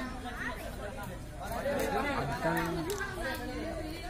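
Overlapping voices of several people talking and calling out at once, the chatter of players and onlookers around the court.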